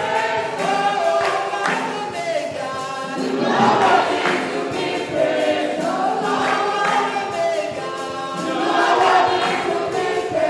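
A woman singing a gospel worship song into a microphone, with other voices singing along.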